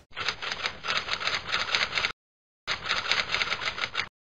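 Typewriter keystroke sound effect: two runs of rapid key clatter, the first about two seconds long and the second about a second and a half, with a short silent pause between.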